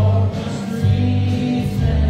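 Live worship song: a small band with acoustic guitar, another guitar and drums playing, with a steady bass line and a congregation singing along.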